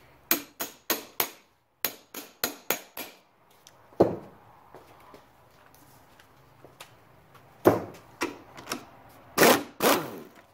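Spark plug socket and ratchet clicking and knocking as a spark plug is worked loose from a small outboard's cylinder head. A run of about nine sharp metallic clicks comes in the first three seconds, then a single knock. Another cluster of clicks and a brief clatter comes near the end.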